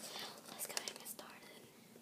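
Faint rustling and crinkling of a small foil-plastic chip bag being handled.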